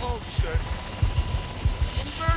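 Military helicopter hovering overhead, its engine and rotor a steady low rumble with repeated thuds.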